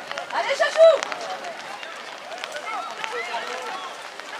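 Young children's voices shouting and calling over one another on a football pitch, the loudest shout about a second in, with scattered short knocks among them.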